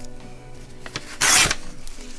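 A short, loud rasp of craft paper against a ruler about a second in, over soft background music.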